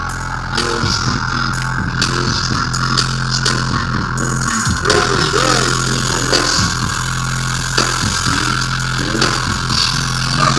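Electric guitars and bass of a metal band holding one low distorted note through the amplifiers, a steady drone without drums.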